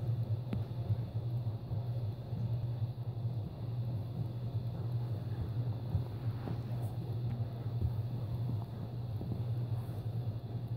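A steady low hum that starts suddenly at the outset and holds level throughout, with a few faint knocks over it.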